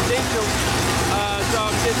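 People talking over a steady low hum.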